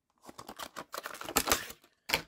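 Stiff clear plastic blister pack crackling and clicking as it is handled and opened, a quick irregular run of small clicks.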